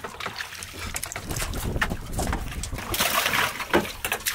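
Water sloshing and splashing against the side of a small fishing boat on choppy sea, with a louder rush of water noise about three seconds in.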